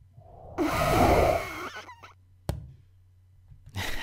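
Animation sound effects: a whoosh blended with a friction-braking screech swells up about half a second in and fades out over about a second, followed by a single sharp click.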